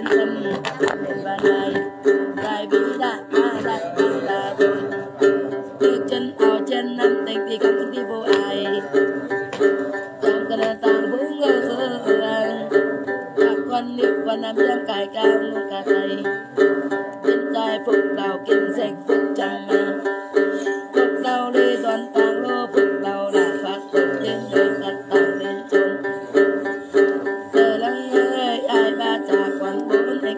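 Đàn tính, the Tày long-necked lute with a gourd body, plucked in a steady, even rhythm, with a woman singing a then chant over it.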